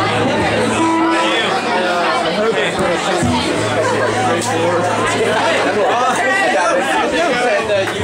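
Many people chattering at once in a club room, over a steady low hum and scattered guitar notes from the stage before a song starts.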